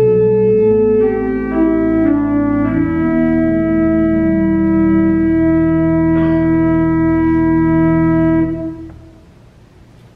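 Organ playing sustained chords that change a few times, then one long held chord that stops about eight and a half seconds in, leaving only room tone.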